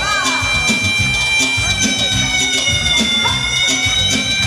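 Live band music for dancing: keyboard and drum kit playing a steady beat, with a long held high note running over it.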